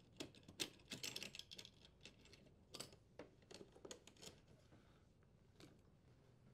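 Faint, irregular clicks and taps of a strain relief nut being unthreaded and the power cord and strain relief pulled free of a dishwasher's metal junction box, thinning out near the end.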